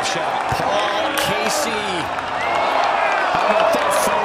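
Golf gallery shouting and cheering as the ball rolls up close to the hole, many voices overlapping and getting louder in the second half.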